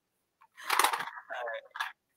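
A woman's voice, breathy and indistinct, from about half a second in until near the end: a sigh or murmured words.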